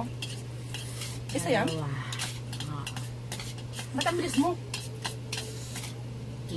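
Chopsticks clicking and scraping against a ceramic plate and a metal bowl as spicy noodles are stirred and picked up, with two short murmured vocal sounds. A steady low hum runs underneath.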